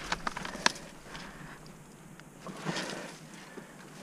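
Movement noise at close range: a quick cluster of sharp clicks and knocks in the first second, then soft rustling and crunching as the player shifts against a wall in snow.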